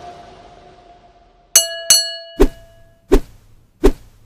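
Sound effects of an animated subscribe-button end screen. A fading tone gives way to two sharp clicks with a brief chime about a second and a half in, then three dull thumps about 0.7 s apart.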